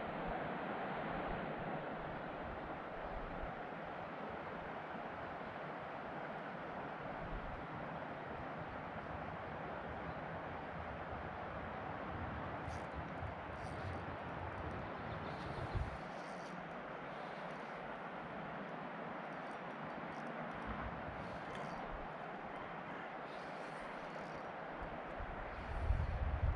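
Steady outdoor ambient noise, an even rush with no single clear source, with one soft thump about sixteen seconds in.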